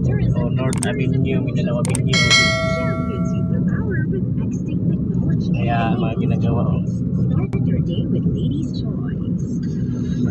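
Steady rumble of road and engine noise inside a moving car's cabin. About two seconds in, a single bell-like ding rings out and fades over a second and a half.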